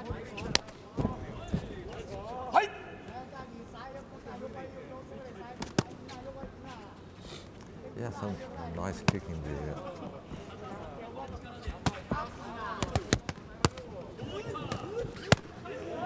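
Gloved kickboxing punches landing with sharp smacks, a dozen or so scattered singly and several in quick succession near the end. Voices call out in between.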